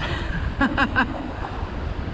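Wind buffeting the microphone over the steady wash of beach surf, with a man's brief chuckle about half a second in.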